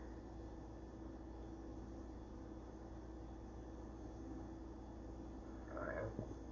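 Quiet room tone: a steady low hum and faint hiss with no distinct events.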